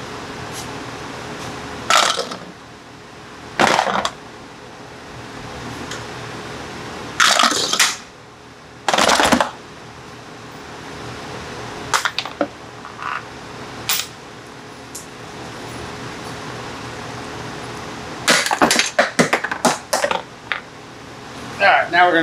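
Metal washers, nuts and bolts and plastic seat-belt retractors being set down on a rubber floor mat: separate clacks and clinks every few seconds, then a quick run of small metallic clinks near the end, over a steady low hum.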